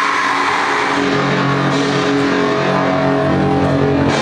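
Loud heavy music at a live show: a sustained, distorted droning chord with steady held notes and no clear drumbeat.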